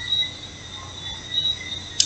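A steady high-pitched whine with a fainter, lower steady tone beneath it, over faint background noise, in a lull between speech.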